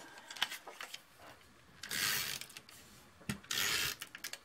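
Paper and card stock handled on a tabletop: a few light taps early on, then two short rasping strokes, one about halfway and one near the end.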